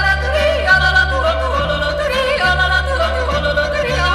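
Music: a yodeling voice leaping and gliding in pitch over a band accompaniment with a bass line that steps between notes about once a second.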